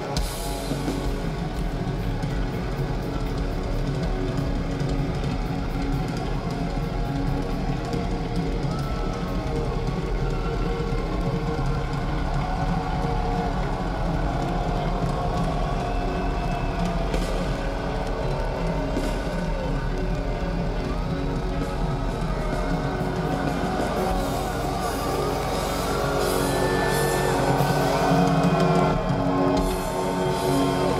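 Live heavy metal band playing in an arena: electric guitars and drums, with held notes that bend in pitch. The music grows louder near the end.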